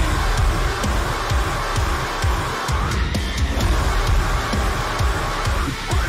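Heavy deathcore song playing, dense and loud, with rapid kick-drum hits under heavy guitars. The low end drops out briefly just before the middle, then the full band comes back in.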